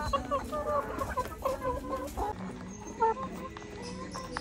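A flock of brown laying hens clucking as they feed at a trough: many short calls close together for the first two seconds, then fewer, with one more call about three seconds in.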